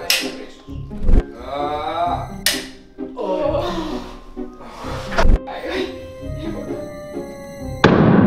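Background music with about four sharp knocks and thuds over eight seconds from a toy pistol with a balloon fastened to it being triggered. A brief wavering voice comes about two seconds in.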